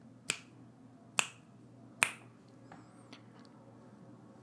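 Three sharp finger snaps, close to the microphone and about a second apart, followed by a couple of much fainter clicks.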